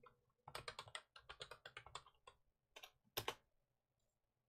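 Quiet typing on a computer keyboard: a quick run of about twenty keystrokes over nearly two seconds, then a few more keys and a louder pair of strokes a little after three seconds in.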